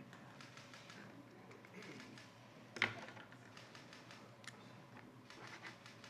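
Quiet room with a few light clicks, the loudest about three seconds in.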